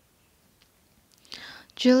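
Near silence for over a second, then a short breath and a woman's voice starting to speak near the end.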